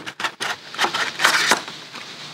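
Plastic goggle tray pulled out of a tight cardboard box with force: several sharp clicks, then a scraping rustle with more clicks as it slides free.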